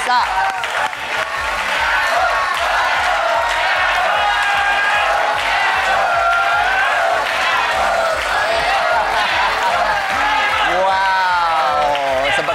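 Upbeat background music with a studio crowd cheering and clapping.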